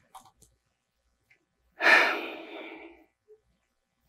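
A woman's single audible exhale, a sigh, about two seconds in, fading away over about a second.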